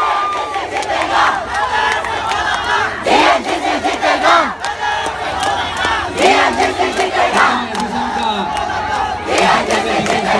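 A large crowd shouting and cheering, many voices overlapping, with louder surges of yelling about three seconds in, around six seconds and again near the end.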